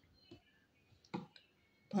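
A quiet pause broken by a few faint short clicks, the loudest a little past the middle.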